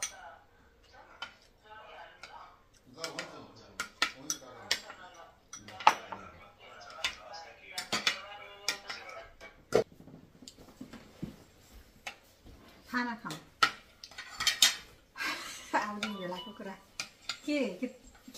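Spoons and forks clinking and scraping against ceramic plates and bowls as people eat, in many scattered sharp clinks.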